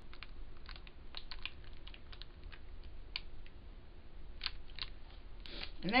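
Clear plastic bag crinkling with irregular small clicks as a handheld mini heat sealer is run along its top to seal it shut.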